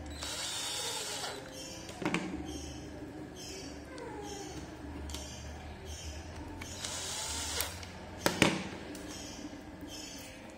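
Small cordless electric screwdriver whirring in two short bursts while driving the screws that fasten a digital multimeter's circuit board into its case, with two sharp knocks of parts, the louder one late on.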